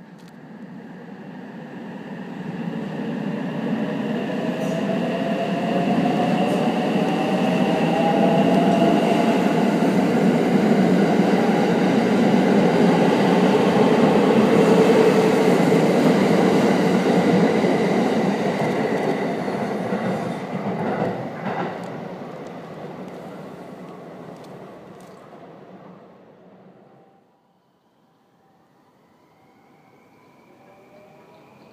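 Limited Express Shirasagi electric multiple unit running past, building up to a loud, steady rumble of wheels on rail with an electric motor whine that rises in pitch, then fading away as it leaves. Near the end the sound cuts off suddenly to a much quieter train sound.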